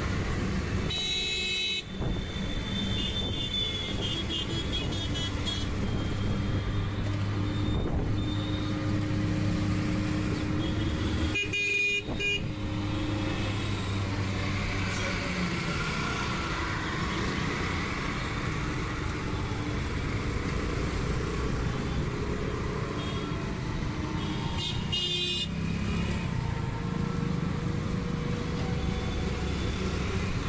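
Busy city road traffic heard from a moving vehicle: a steady engine drone with scooters and cars passing. Vehicle horns honk briefly three times: near the start, about twelve seconds in, and about twenty-five seconds in.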